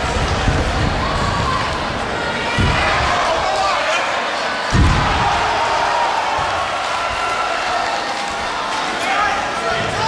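Spectators around an MMA cage yelling and shouting. About halfway through there is a thud as a fighter is taken down onto the canvas mat, and a lesser thump comes a little earlier.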